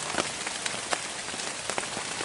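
Rain falling on forest foliage: a steady hiss with scattered drops ticking on leaves.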